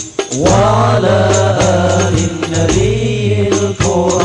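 Group of male voices singing an Arabic sholawat together into microphones, accompanied by rebana frame drums with jingles. A quick run of drum strikes opens it, then the sung line comes in and is held, with drum strokes continuing under it.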